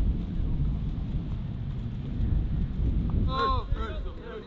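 Low, gusty rumble of wind buffeting the microphone on an open training pitch, with a man's voice calling out briefly near the end.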